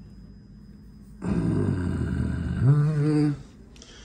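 A man's long breathy exhale starting a little over a second in, turning into a low voiced groan, about two seconds in all.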